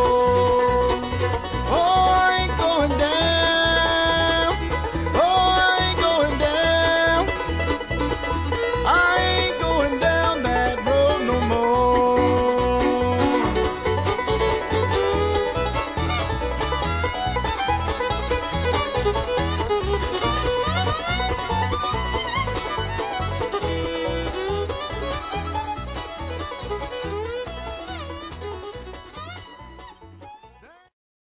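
Bluegrass band playing an instrumental break: banjo picking and a fiddle playing long held, sliding notes over a steady guitar rhythm. The music fades out over the last few seconds.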